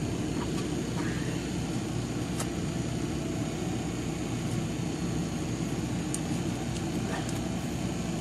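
Airbrush compressor running with a steady low hum, a few faint ticks over it.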